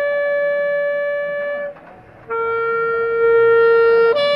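Alto saxophone playing two long held notes, the second lower than the first, with a short break about halfway between them.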